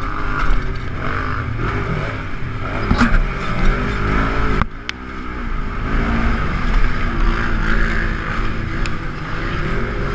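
Polaris RZR XP1000 side-by-side's parallel-twin engine racing under hard throttle, its pitch rising and falling with the throttle; about halfway it drops away briefly with a sharp knock, then climbs again. A few short knocks and rattles from the chassis over the rough track.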